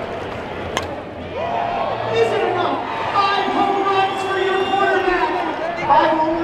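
A single sharp crack of a bat hitting a softball less than a second in, followed by players and crowd yelling and cheering in long held shouts.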